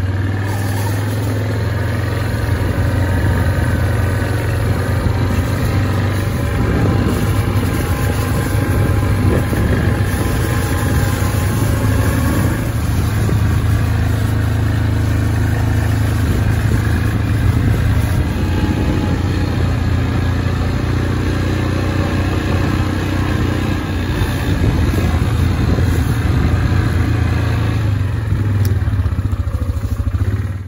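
Four-wheeler (ATV) engine running steadily under way, a constant low drone with only slight changes in pitch.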